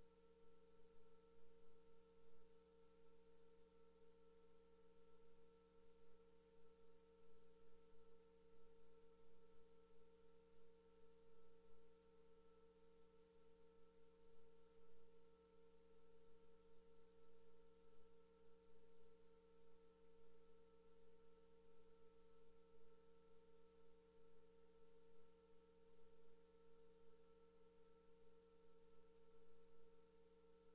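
Near silence: only a faint, steady electrical hum made of a few constant tones in the audio feed, unchanging throughout.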